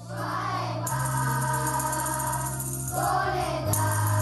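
Group of children singing a Christmas song to musical accompaniment, with jingling percussion coming in about a second in.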